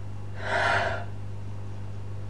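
A person's single sharp, audible breath, lasting about half a second, about half a second in, over a steady low electrical hum.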